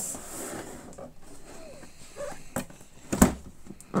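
Hands working at a cardboard box, trying to get it open, with rustling and scattered clicks and one loud thump about three seconds in.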